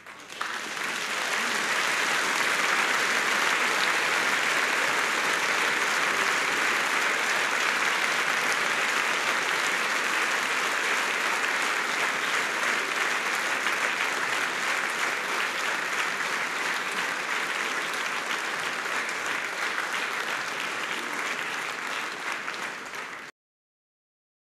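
Concert audience applauding, a dense steady clapping that breaks out suddenly just after the final chord and cuts off abruptly near the end.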